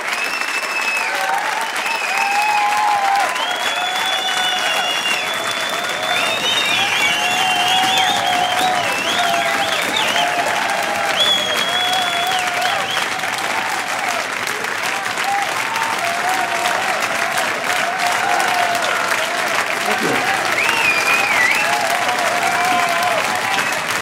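Large audience applauding steadily, with cheering shouts and whistles over the clapping.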